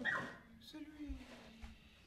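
A dog whimpering: a short loud burst at the start, then a whine sliding down in pitch for about a second. A voice says a single word over it.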